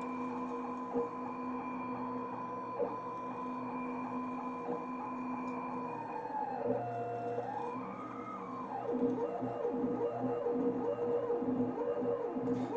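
ClearPath servo motors of a homemade egg-painting CNC machine running, a steady whine of several tones. A little past halfway the tones dip and rise again in pitch as the motors change speed while the marker traces its pattern on the egg.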